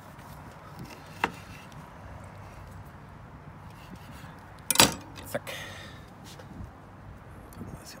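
A chef's knife slicing through a lime and knocking on a wooden end-grain cutting board: a light knock about a second in and a loud one near five seconds, followed by a smaller one. The knife is one its user calls blunt.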